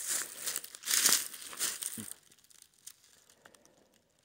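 Footsteps crunching through dry fallen leaves on a forest floor: several steps over about two seconds, then they stop, leaving only a few faint clicks.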